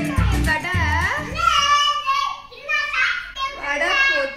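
Background music with a bass beat that stops about a second and a half in, followed by a high-pitched, child-like voice with a wavering pitch.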